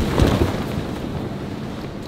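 A BMX bike lands on an inflatable airbag with a dull thump, followed by a steady rushing noise like wind over the microphone.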